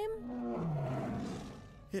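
A tiger roaring once, one long roar that falls in pitch over about a second and a half and fades out.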